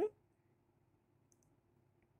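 Near silence with one faint, short click a little past halfway: a computer mouse click advancing a presentation slide.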